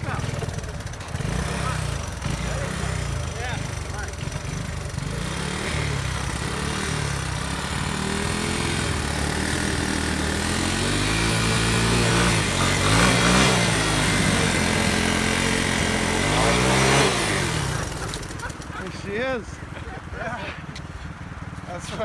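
Honda three-wheeler's single-cylinder engine revving hard under load as it is worked up a bank and out through brush. The revs rise and fall repeatedly, growing louder through the middle, then drop back sharply about three-quarters of the way through.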